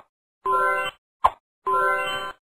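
Cartoon sound effects for a title card. A short, sharp pop about a second in falls between two steady, pitched tones, each about half a second long.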